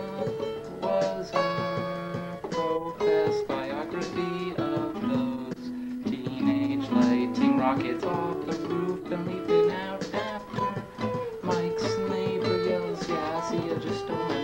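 Acoustic guitar played solo, an instrumental passage of picked single notes and chords, with a run of notes climbing in pitch about halfway through.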